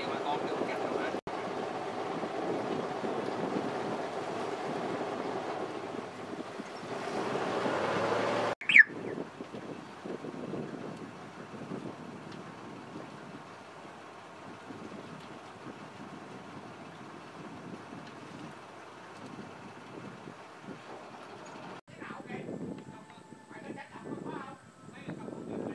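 A boat's motor running steadily with wind and water noise, louder for the first eight seconds and quieter after a cut. About nine seconds in, a short sharp sound is the loudest moment. In the last two seconds, indistinct voices.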